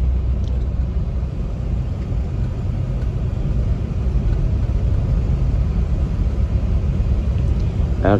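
Steady low rumble of a car driving on a wet road, heard from inside the cabin: engine and tyre noise with no sharp events.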